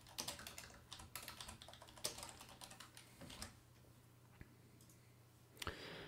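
Faint typing on a computer keyboard: a run of quick keystrokes that stops a little past halfway, followed by one lone click.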